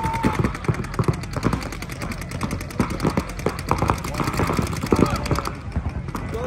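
Paintball markers firing in rapid strings, many shots a second, with several guns going at once; the firing thins out near the end.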